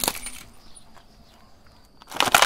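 Hard plastic toy truck cracking under a car tyre, the last sharp cracks dying away within about half a second, followed by a quiet stretch with a few faint high ticks.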